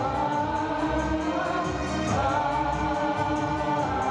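Opera music: voices singing long held notes together over an instrumental accompaniment.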